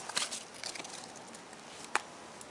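A hand of Pokémon trading cards being shuffled and slid between the fingers: soft rustling of card faces with a few light clicks of card edges, and one sharper click near the end.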